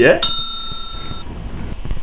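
A bright, bell-like ringing tone held for about a second, then cut off abruptly, followed by a low steady rumble.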